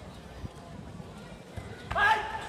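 Arena ambience with distant voices and dull thumps of bare feet moving on the competition mat. Just before the end, a sudden loud shout bursts out as the two karateka close in: a kiai.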